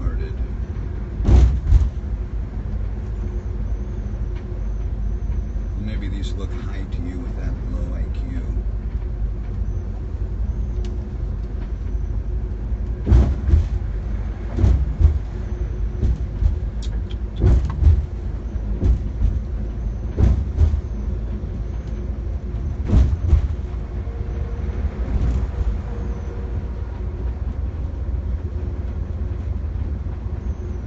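Bus driving at road speed, heard from inside at the front: a steady engine and road rumble, broken by a few short knocks and rattles, most of them in the second half.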